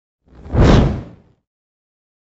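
A whoosh sound effect that swells up and fades away within about a second, the transition sting for an animated news logo sliding in.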